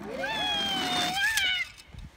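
A girl's long high-pitched squeal, held for about a second and a half, sliding slightly down in pitch and lifting again just before it stops.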